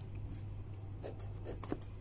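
Pen scratching on paper, a few short faint strokes about a second in as the written answer is underlined.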